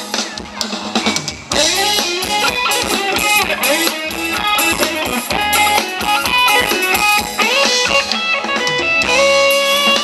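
Thai dance-band music with electric guitar and drum kit playing a steady beat. The band is thinner for the first second and a half, then comes in fuller.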